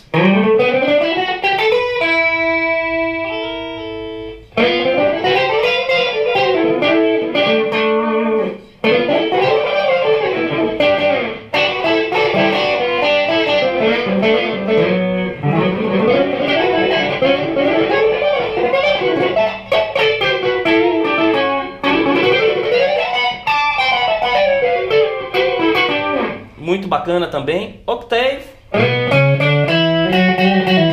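Electric guitar played through a Boss ME-70 multi-effects unit with its Harmonist modulation effect on, which adds a pitch-shifted harmony line to the notes played. A chord rings out about two seconds in, then running melodic phrases go up and down the neck with a few short breaks.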